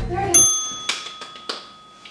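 A bright bell-like ding sound effect: a single chime of a few steady high tones that starts about a third of a second in and fades over nearly two seconds, marking a point scored for a catch. Two short sharp clicks sound while it rings.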